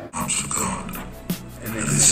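An animal-like growl sound effect laid over music.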